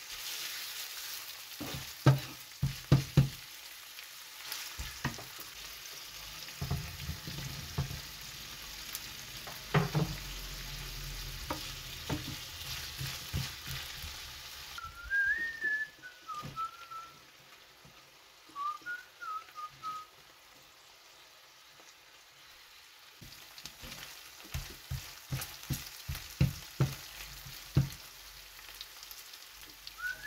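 Bacon and onion sizzling in a non-stick frying pan while a wooden spatula stirs and knocks against the pan. Midway the sizzle drops away and a few wavering whistled notes are heard; sizzling and stirring resume near the end.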